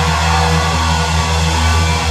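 Live rock band holding one sustained chord on distorted electric guitar and bass, steady and loud, with no drum hits, as the song's finale rings out.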